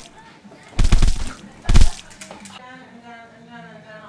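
Two bursts of gunfire: a quick volley about a second in and a shorter burst just before the halfway mark. A faint drawn-out voice follows in the second half.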